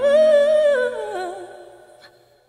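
Background song: a solo singing voice holds a long wavering note, then glides down and fades out near the end, while a soft low accompaniment drops away beneath it.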